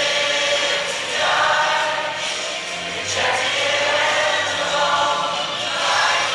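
Choir music: slow, sustained sung chords over a low bass line, moving to a new chord every second or two.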